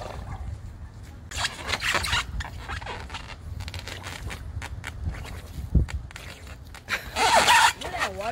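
Breath blown in hard puffs into a large water-filled balloon, with a short cluster of puffs early and a louder rush of air shortly before the end. A single dull thump comes a little before that.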